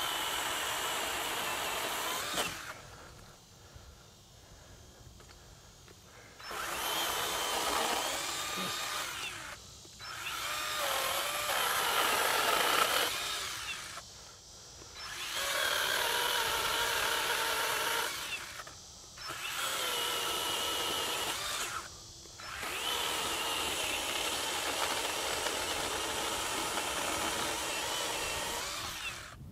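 SKIL 40V brushless 10-inch pole saw cutting through a limb about three inches thick in about six bursts of running, with short pauses between them and a longer lull early on. The motor's whine dips in pitch at times as the chain bites into the wood.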